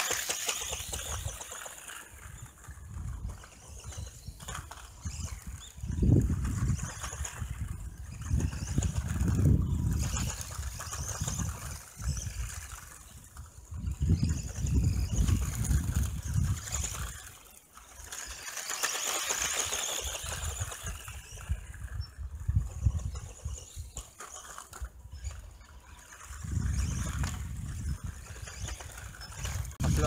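Electric RC buggy running laps on a dirt track, its motor and gears whirring faintly as it moves nearer and farther. Low rumbling swells rise and fall every few seconds and are the loudest sound.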